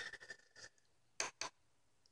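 A small Hitec HS-82 RC servo whirring faintly as it moves under a servo tester, with light ticks, then two sharp clicks about a second in. It is the known-good reference servo, moving without jitter.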